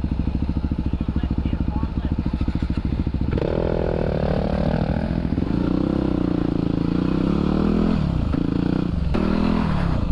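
Yamaha WR250R single-cylinder dirt bike engine idling with a rapid, even beat, then revving up about three seconds in and running under throttle as the bike rides off, its pitch rising and falling.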